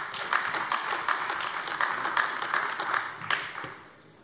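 Applause from parliament members, many hands clapping, dying away near the end.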